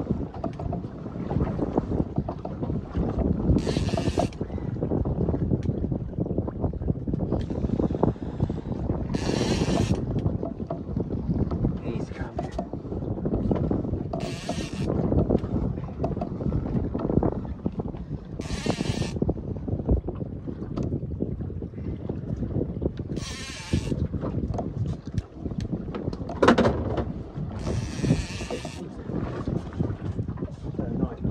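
Wind on the microphone and sea noise around a small boat, with a fishing reel sounding in short high-pitched bursts about every five seconds as a blue shark is played on a bent rod.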